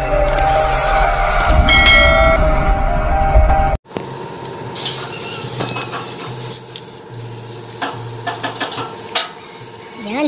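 Intro music that cuts off abruptly about four seconds in, followed by a compressed-air paint spray gun hissing steadily as it sprays paint.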